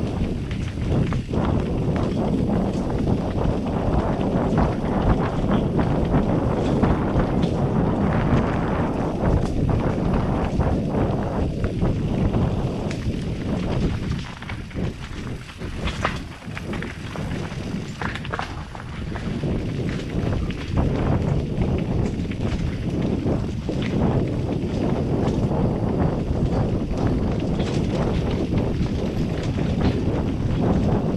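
2017 Scott Gambler 720 downhill mountain bike descending a rocky, rooty dirt trail, heard from a helmet camera. Tyres grind over dirt and rock, the bike knocks and rattles over the bumps, and wind rushes over the microphone. The noise eases for a few seconds around the middle, with a few sharp knocks.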